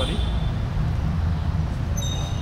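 Vespa scooter's seat lock turned with the key and the seat swung open, a few short high metallic tones near the end, over a steady low rumble.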